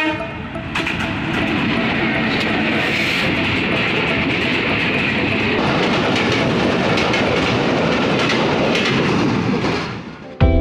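A freight train passing close by: the steady rumble and rattle of goods wagons, with wheels clicking over the rail joints. It fades near the end.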